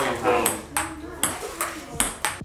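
A run of quick, sharp, ringing taps, two or three a second, over a person's voice.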